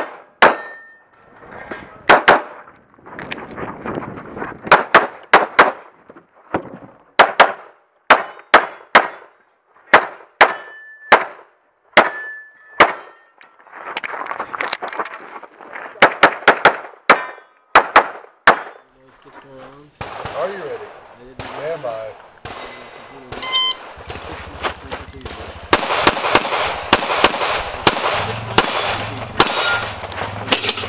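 Rapid pistol fire, mostly in quick pairs, with steel targets ringing briefly after some hits. The shooting stops for a few seconds after about 18 s, and denser shooting over a low steady hum follows near the end.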